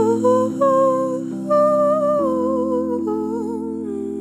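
A woman's voice hums a slow wordless melody with vibrato over sustained chords on a Nord Electro 5D stage keyboard. The chords change about half a second in and again about two seconds in.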